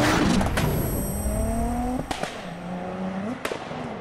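Intro sound effect of a car engine revving, its pitch climbing, breaking off about two seconds in, then climbing again, with a few sharp clicks, and fading out near the end.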